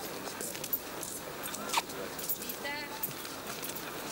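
Footsteps clicking on stone paving with a murmur of distant voices. About halfway through come two brief high-pitched calls: a single up-and-down note, then a quick warble.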